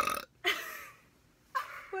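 Young women bursting into loud laughter: a sharp vocal outburst at the start, then breathy laughs about half a second in and again near the end.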